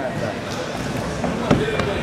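Running footsteps, then sharp thumps from about one and a half seconds in as feet strike a parkour practice wall during a wall run.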